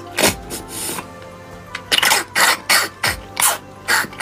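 Loud, wet slurping and sucking as marrow is drawn out of a soup-soaked bone by mouth, in a string of short bursts that come faster in the second half. Soft background music plays underneath.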